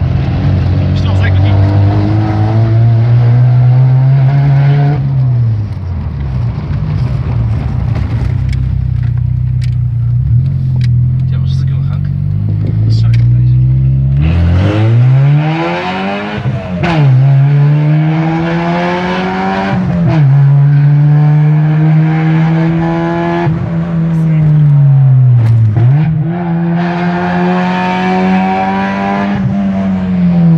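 Fiat Punto 75 ELX's four-cylinder petrol engine running with no mufflers, heard from inside the cabin. It is loud, climbing in pitch under acceleration and dropping back several times as gears are changed, with a steadier stretch in the first half.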